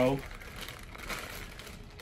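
Clear plastic packaging bag crinkling faintly and irregularly as it is handled.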